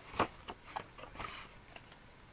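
Scored cardstock being handled and pressed flat on a craft mat: one sharp tap shortly after the start, then a few light clicks and a brief papery rustle.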